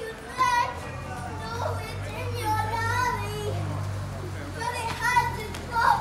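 Young children's high-pitched voices calling out and chattering, with loud shouts near the start and near the end, over a low steady hum.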